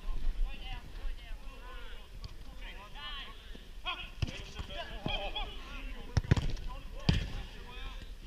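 Football being kicked during five-a-side play on an artificial pitch: a few sharp thuds of the ball, about four seconds in and again around six and seven seconds in, with players calling out in the distance.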